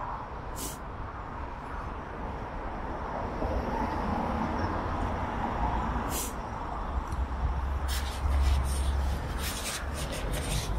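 A car driving past close by on the road: steady tyre and engine noise that swells in the middle, with a deep low rumble late on and a few sharp clicks.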